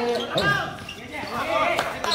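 A basketball bouncing on a hard court, with one sharp bounce near the end, while people talk and call out over the play.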